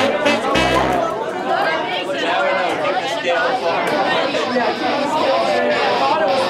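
Many people talking at once in a room, with background music in the first second or so.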